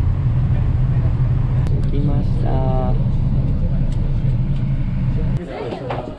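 Steady low rumble of a coach bus on the road, heard from inside the passenger cabin, with a short burst of a person's voice about halfway through. The rumble cuts off suddenly near the end.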